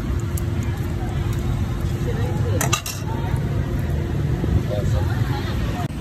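Steady rumble of street traffic with faint voices in the background, and a short clatter of metal tongs a little under three seconds in.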